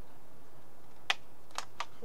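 Three short, light clicks as a thick rubber band is stretched and let go around the walls of a small card model hut. The first click, about a second in, is the loudest.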